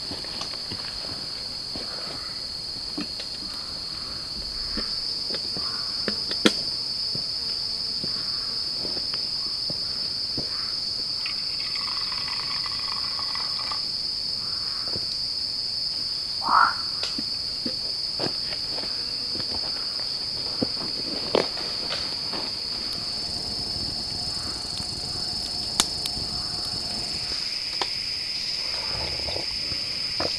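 A steady, high-pitched drone of forest insects, with scattered light knocks as cookware is handled. A brief, louder sound comes about halfway through.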